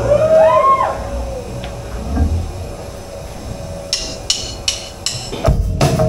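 A few short sliding tones in the first second, then four sharp clicks a third of a second apart, like drumsticks counting in. About half a second before the end the rock band comes in loud on the drum kit.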